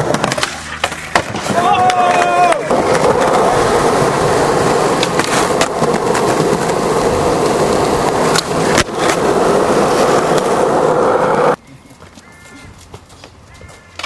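Skateboard wheels rolling hard over concrete in a loud, steady rumble, broken by sharp clacks and pops of the board during tricks and landings. The rolling cuts off suddenly near the end, leaving it much quieter.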